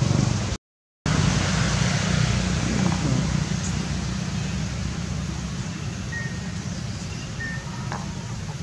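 Steady outdoor background noise, a low rumble with hiss, broken by a brief total dropout about half a second in. Two faint short chirps come near the end.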